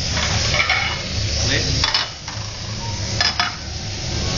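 Food sizzling as it fries on a hot cooking surface, with metal utensils stirring and scraping it and several sharp clinks, a pair of them a little after three seconds.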